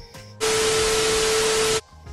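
An edited-in sound effect: a loud burst of static-like hiss with a steady tone under it. It starts abruptly about half a second in and cuts off just as sharply about a second and a half later, marking a scene transition.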